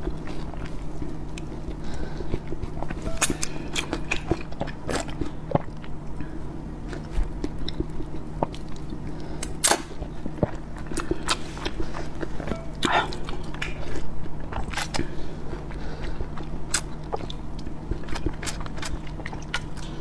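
A person slurping noodles and chewing, with irregular wet mouth clicks and smacks throughout, over a steady low hum.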